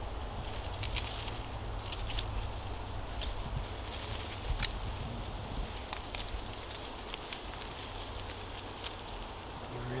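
Scattered faint clicks and rustles of wire being twisted by hand around a grapevine and an overhead tree limb, over a steady low rumble.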